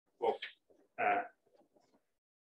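A man's voice making two short hesitation sounds, the second a drawn 'uh'.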